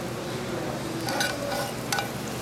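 Steady sizzling of a hot sauté pan, with two light clicks from metal tongs, one about a second in and one near the end.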